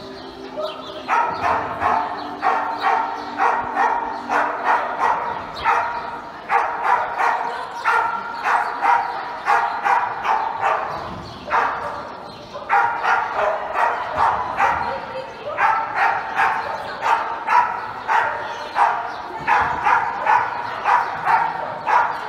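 Border collie barking excitedly and repeatedly while running an agility course, about two or three barks a second in long runs with a couple of short breaks.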